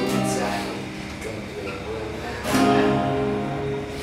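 Two acoustic guitars playing a song together, strummed chords ringing, with the loudest strum about two and a half seconds in; a boy's voice sings over them.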